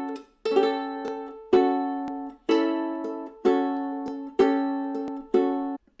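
Ortega ukulele strummed in A major, about one chord a second, each chord ringing briefly and then cut short. It is a blues accompaniment with an ornament added on the second string.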